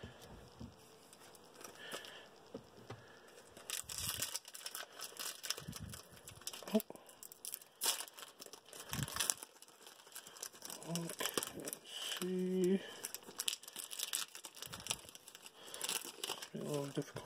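Foil wrapper of a Pokémon trading card booster pack crinkling and tearing as it is pulled open by hand, a dense run of crackles starting about four seconds in.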